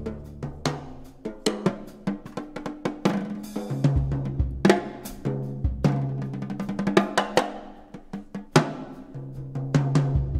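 Live jazz drum kit playing a busy passage of quick drum and cymbal strokes with several loud accents, over held double bass notes.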